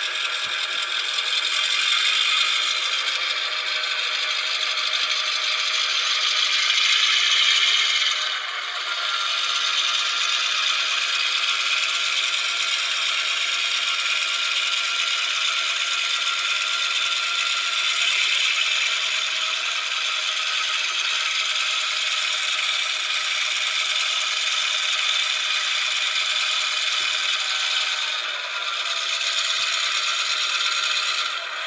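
Sampled EMD 16-567C non-turbocharged diesel engine sound played by an ESU LokSound 5 Micro decoder through a tiny 8x12 mm speaker in an N scale SD7. It sounds thin and rattly with no bass, steady, with short dips about eight seconds in and near the end.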